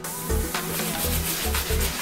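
A soft-bristle brush wet with cleaning solution scrubbing a sneaker's leather upper, working up suds, heard under background music with a steady beat.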